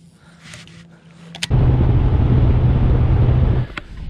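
Boat outboard motor running, a steady low hum under a loud rush of noise, coming in sharply about a second and a half in and cutting off abruptly shortly before the end.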